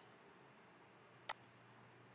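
A single computer mouse click a little past halfway, over near silence.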